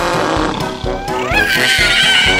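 Cartoon background music, with a high-pitched cartoon kitten's yell that slides up in pitch about a second in and is then held.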